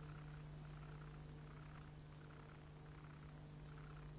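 Near silence: a faint, steady electrical hum with hiss over it, as from a blank stretch of old videotape, with a soft recurring flutter in the noise.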